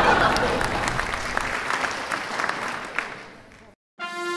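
Audience applause, a dense patter of clapping that fades away steadily and cuts off shortly before the end.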